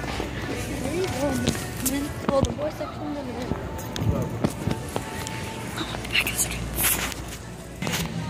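Indistinct voices over background music, with knocks and rustling from a phone being handled and swung around.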